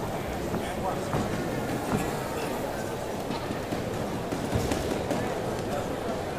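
Boxing-arena crowd noise during a bout: a steady babble of voices and shouts, with a few short, sharp knocks scattered through it.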